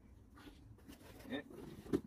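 Mostly quiet, with faint scattered handling sounds of hands digging potatoes out of soil in a fabric grow bag. There is a brief pitched vocal sound a little over a second in and a short knock near the end.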